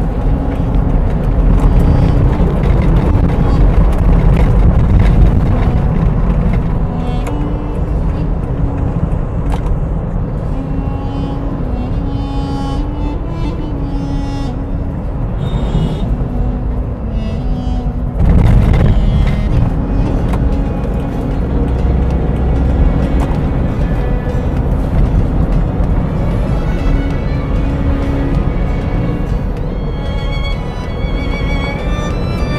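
Background music with a slow stepping melody, laid over the steady low rumble of a car driving on the road. There is a louder swell a little past halfway.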